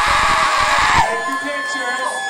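Audience cheering and screaming, cutting off abruptly about a second in, followed by quieter held notes of music.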